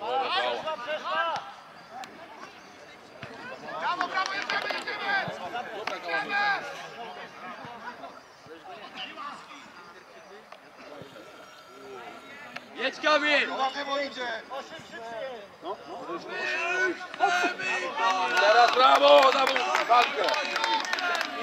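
Voices shouting and calling across a football pitch during play, in several bursts with quieter spells between, loudest near the end.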